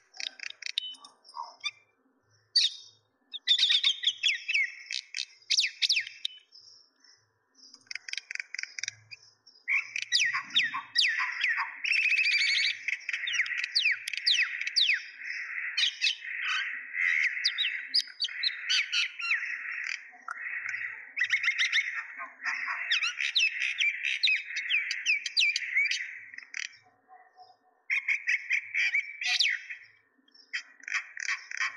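Small birds chirping: scattered short chirps at first, then dense, unbroken chattering from about a third of the way in until shortly before the end.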